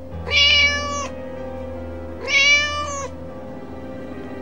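Ginger kitten meowing twice, each call under a second long and a second or so apart, over soft background music.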